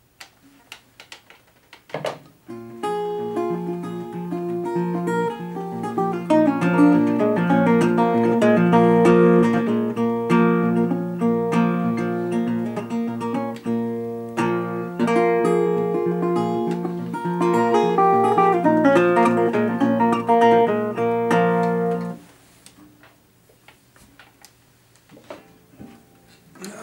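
A National Style-O single-cone metal-bodied resonator guitar, fingerpicked: ringing chords over a repeated bass note. It starts about two seconds in, after a few handling knocks, and stops abruptly near the end. The tone is crisp and bright.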